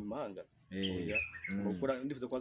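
A bird chirping in the background, one warbling call about a second in, over a man's voice.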